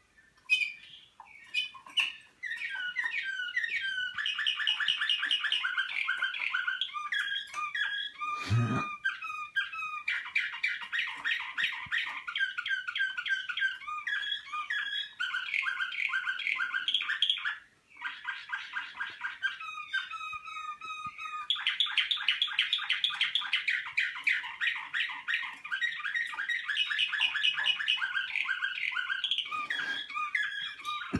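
Slavujar song canaries singing: long phrases of rapid, evenly repeated notes, one run after another, with a short break a little past the middle. A brief thump about eight and a half seconds in.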